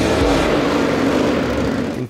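Indian Scout V-twin flat-track race bike's engine revving hard, its pitch easing slightly down.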